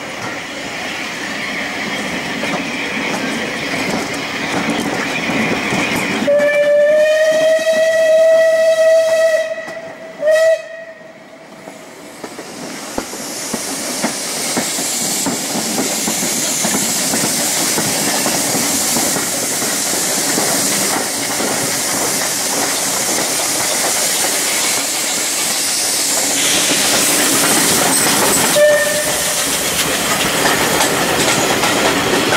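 Steam locomotive whistle, likely Bulleid Pacific 34092 City of Wells: one long blast starting about six seconds in and lasting about three seconds, then a short second blast. After that, the locomotive's steam hiss and exhaust build steadily louder over the wheel clatter of the carriages, with one brief whistle toot near the end.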